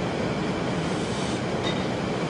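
Steady even hiss and hum of room and recording noise during a pause in a lecture, with no distinct event.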